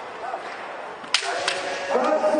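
Bamboo shinai strikes in kendo: a sharp crack a little over a second in and a second, lighter one about half a second later, with a kendoka's drawn-out kiai shout starting under them.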